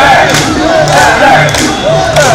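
A crowd of mikoshi bearers shouting a rhythmic group chant, the loud accents recurring about twice a second, with a high warbling tone weaving over the voices.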